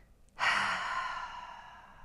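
A woman's long, breathy sigh starting about half a second in, loudest at the start and fading away over about two seconds.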